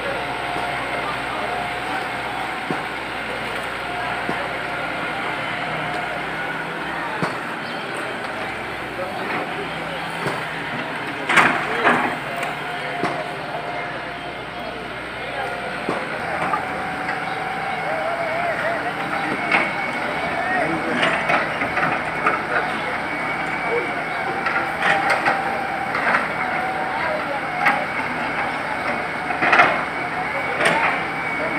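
Demolition-site noise: a steady machinery drone under background voices, with scattered sharp knocks. The loudest knocks come in a cluster about eleven seconds in, and more follow through the second half.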